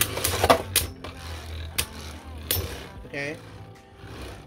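Divine Belial and Ultimate Valkyrie Beyblade Burst tops spinning in a plastic stadium and clacking against each other in sharp hits, three quick ones in the first second and two more later, over a low steady whir of spinning.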